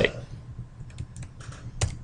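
A few scattered computer keyboard keystrokes and clicks, one louder click near the end.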